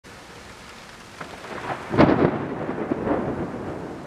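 Cinematic logo-intro sound effect: a noisy, thunder-like swell with a few sharp cracks, the loudest about halfway through, then easing off.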